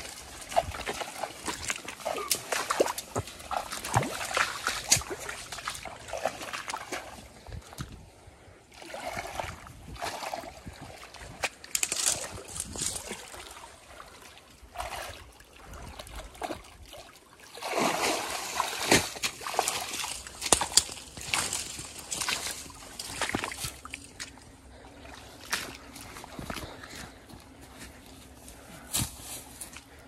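Shallow water sloshing and splashing irregularly, dying down briefly twice and busiest past the middle.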